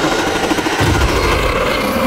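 Loud, dense rattling and clicking noise with deep booming thuds, a horror trailer's sound for unseen creatures massing outside a glass-walled room at night.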